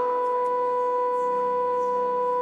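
Pipe organ holding one long, steady note sounded in two octaves, over softer lower notes.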